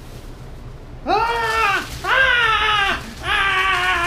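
A man's voice screaming three times in mock horror: long, high wails of about a second each, starting about a second in, each falling slightly in pitch.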